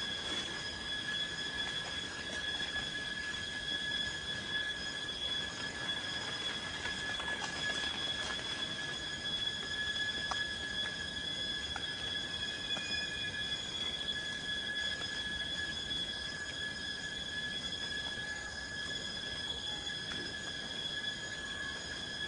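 A steady high-pitched whine with several overtones, unchanging in pitch and level, with a couple of faint clicks near the middle.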